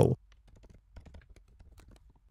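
Typing on a computer keyboard: a run of faint, irregular keystrokes.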